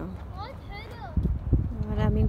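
High-pitched children's voices calling out briefly, rising and falling in pitch, over a steady low rumble.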